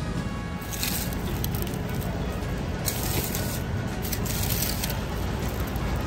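Background music over the steady hubbub of a busy supermarket, with a few short bursts of rustling as a mesh bag of red onions is handled.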